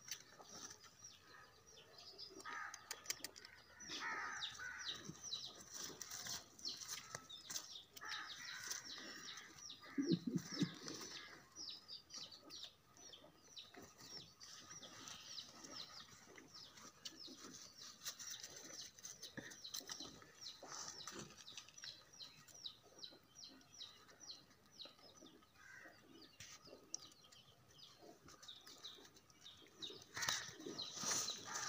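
Birds chirping in rapid, short, high notes, on and off, with rustling as the rabbits move and are handled in the grass. A loud low thump comes about ten seconds in.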